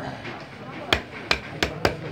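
Four sharp chopping knocks in quick succession, beginning about a second in, from fish being cut on a cutting block.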